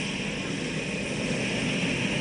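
Turboprop aircraft engines running on an airfield: a steady high whine over a low rumble.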